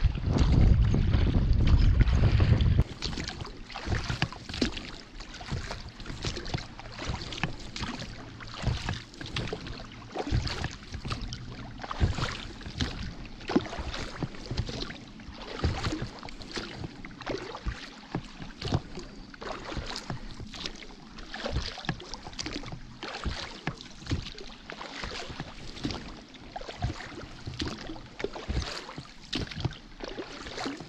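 A loud low rumble stops suddenly about three seconds in. After that, small irregular splashes, drips and clicks of calm seawater lapping against an inflatable rubber dinghy as it drifts.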